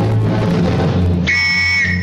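Orchestral film score playing, with a police whistle blown once, a single shrill steady blast of under a second, starting a little past the middle: the signal to clear the café.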